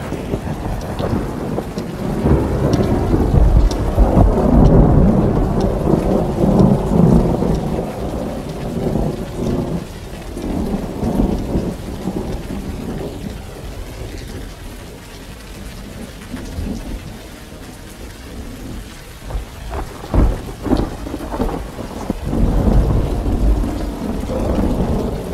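Thunderstorm on a film soundtrack: steady rain with rolling thunder, loudest over the first several seconds and quieter in the middle, then sharp thunder cracks about twenty seconds in followed by another roll.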